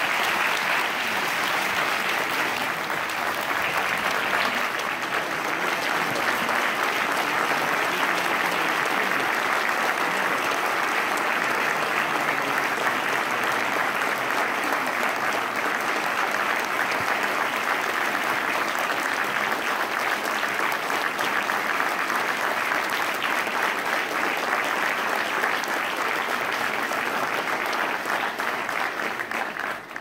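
Audience applauding, long and steady, dying away near the end.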